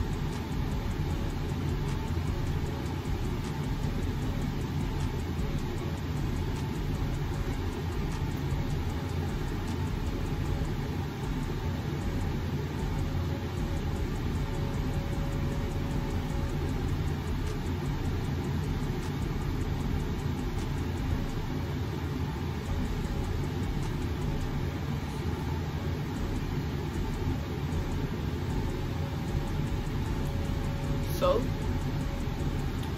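Steady low rumbling background noise, even and unbroken, with a faint steady hum.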